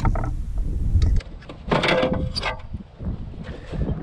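Wind rumbling on the microphone that cuts off suddenly about a second in, followed by a few bursts of handling and knocking noise from gear being handled on a plastic kayak.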